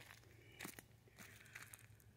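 Faint footsteps crunching on dry leaves and stony soil: a few soft crunches and crackles, the first cluster just over half a second in and more from about a second in.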